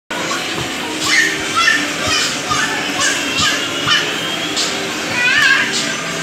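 Young children's voices shouting and calling out at play, many short high-pitched cries, over background music.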